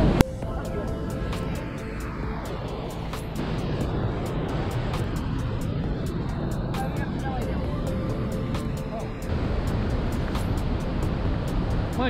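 Steady rushing of Christine Falls, a snowmelt-fed waterfall running full, with background music laid over it.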